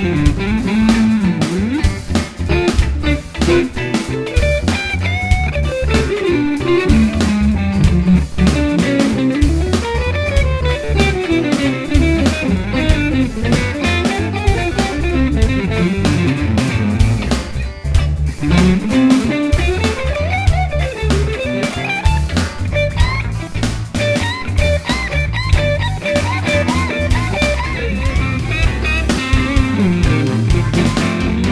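Electric guitar, a Stratocaster-style with single-coil pickups, playing blues lead lines with string bends over a shuffle-funk backing track in D with drums and bass.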